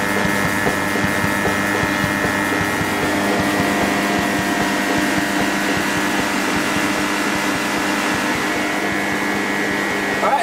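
Fieldpiece MR45 refrigerant recovery machine running steadily in recover mode, its DC-motor-driven dual-cylinder compressor and condenser fan giving a constant hum with a few steady tones as it draws refrigerant out of an air-conditioning system into a recovery tank.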